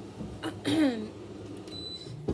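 A small air conditioner sounding off: a short pitched sound about half a second in that slides down in pitch, then a brief, thin, high steady beep near the end.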